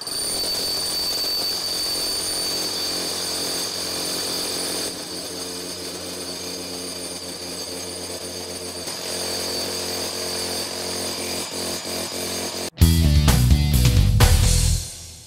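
Bosch GBH18V-45C cordless SDS Max rotary hammer drilling a one-inch hole, played back fast, heard as a steady whine with music. Near the end the drilling gives way to a much louder burst of music.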